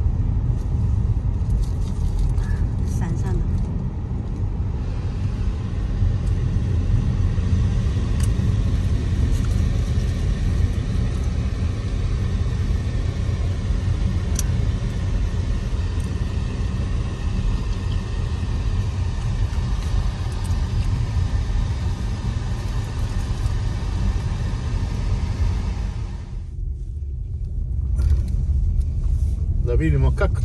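Car cabin noise while driving: a steady low rumble of tyres and engine on the road. A little after 26 s in, the sound briefly drops and thins out, then comes back.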